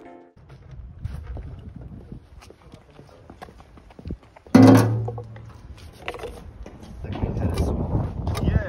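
FSO 125p 1500's four-cylinder engine idling, heard at the exhaust tailpipe as a low, uneven rumble. About halfway through there is a sudden loud thump, followed by handling noises.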